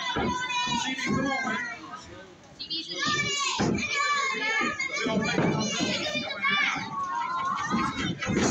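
Children's voices talking and calling out, high-pitched, with a short lull about two seconds in.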